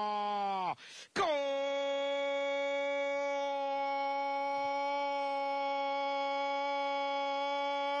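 Spanish-language football commentator's long drawn-out goal call. One held note falls away just under a second in, and after a brief breath a new, higher note is held steady for about seven seconds.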